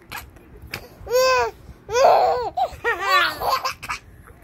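Baby laughing in three high-pitched bouts, the last a quick run of short laughs.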